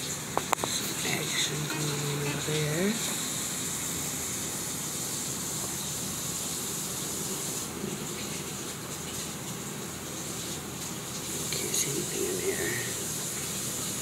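Steady hiss of water circulating in an AeroGarden hydroponic planter, from its pump moving water under the seed-pod deck. Faint voices can be heard in the background in the first three seconds and again about twelve seconds in, with a couple of light clicks just after the start.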